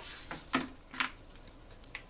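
Fabric scissors snipping through sweatshirt fleece: two sharp snips about half a second apart, then a faint click near the end.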